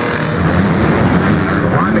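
Motocross bike engines revving as riders go over a jump, with a short burst of hiss right at the start.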